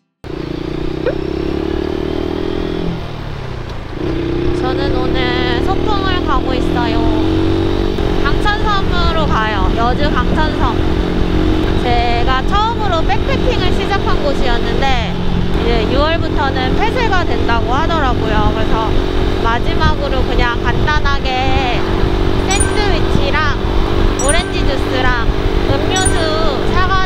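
Buccaneer 125 motorcycle engine heard from on the bike, pulling away with rising revs. A short dip about three seconds in marks a gear change, then it revs up again and settles into a steady cruise.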